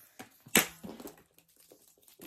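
Leather bag strap with metal buckle hardware being handled and pulled over the shoulder: a few short clicks and rustles, the sharpest about half a second in.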